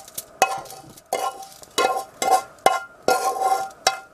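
A spoon scraping and knocking against the inside of a saucepan, about seven quick strokes a half-second or so apart, the pan ringing briefly after each, as a crumbly sugar-and-wax mixture is scraped out.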